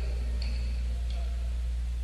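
Steady electrical hum on a 1960s studio session tape, with a sharp pinging tick about every 0.7 s keeping time; the ticks come twice and then pause about a second in.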